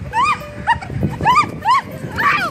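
A dog barking repeatedly: about five short, high yelping barks in two seconds, each rising then falling in pitch.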